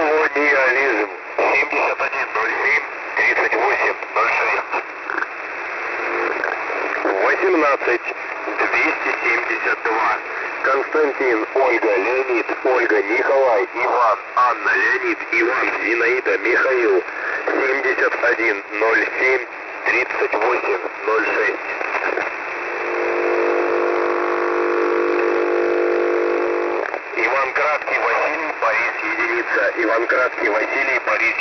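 Russian military shortwave radio voice message received over single-sideband: a Russian voice spells a word letter by letter using phonetic names such as "Zinaida", sounding thin, narrow-band and hissy. From about 23 to 27 seconds the voice gives way to a steady pitched buzz with several overtones.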